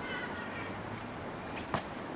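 A short high-pitched call in the first half-second, then a single sharp click near the end, over steady outdoor background noise.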